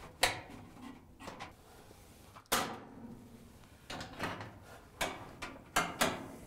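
Dryer drive belt and spring-loaded idler pulley being handled as the belt is slipped off the pulley: about six sharp clacks and knocks at irregular intervals.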